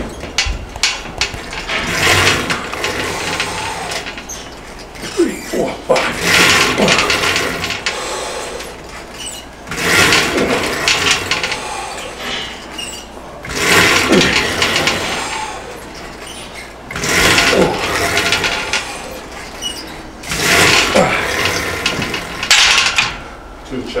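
Repetitions of a lat pulldown on a chain-driven machine: a burst of noise about every three to four seconds, one for each pull, from the chain and weight stack moving together with hard breaths.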